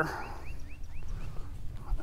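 A bird calling a quick run of about five short chirps, about four a second, over a low steady rumble.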